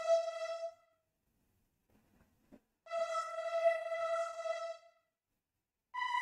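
Synth pad from Arturia Analog Lab V (the Stylist Pad preset) playing a simple E minor pattern: a held E note fading out about a second in, a gap, a second E from about three to five seconds, then a note a fifth higher on B beginning right at the end.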